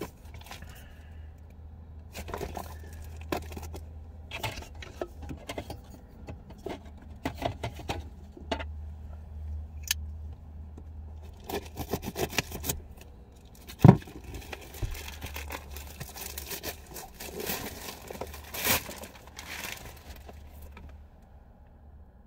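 Hands opening a mail package: scattered scrapes, rustles, tearing and clicks of packaging being handled, with one sharp knock a little past the middle. A steady low hum runs underneath.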